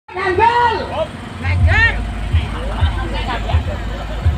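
People's voices calling out loudly, over a steady low rumble with deep thuds about every half second.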